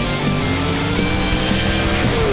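Heavy rock music with a racing engine over it, its pitch rising steadily: a sand-drag vehicle accelerating down the track.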